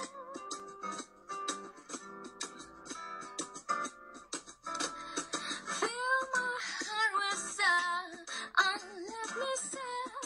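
Live acoustic music: a woman singing with plucked acoustic guitar accompaniment. The singing is fuller and louder from about halfway through.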